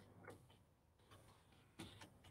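Near silence with a few faint computer keyboard clicks as a word is typed, the last one near the end the loudest.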